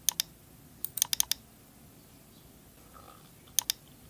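Computer mouse and keyboard clicks: a quick pair of clicks at the start, a short run of about six clicks about a second in, and another pair near the end.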